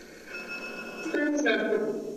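Spirit box scanning through radio stations: choppy, narrow-sounding snippets of broadcast voices and steady tones from its small speaker, changing in steps, louder in the second half.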